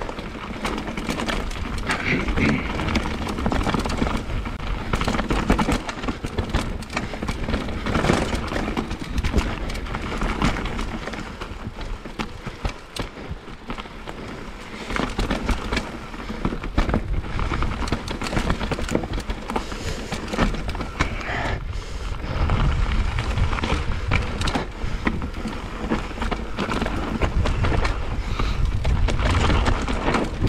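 Mountain bike descending a dirt and rock singletrack: tyre noise on the trail with constant rattling and clattering of the bike over roots and stones, and a low rumble of wind buffeting the camera microphone that grows heavier in the last third.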